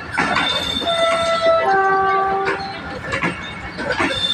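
Passenger train coaches rolling past at speed, their wheels clicking over the rail joints. In the middle a steady two-note tone sounds for about a second and a half, first higher, then lower.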